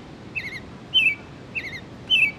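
House sparrow chirping: short, repeated chirps, three or four in two seconds.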